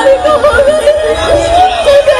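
Burmese traditional stage music with a single wavering, heavily ornamented melody line carried throughout.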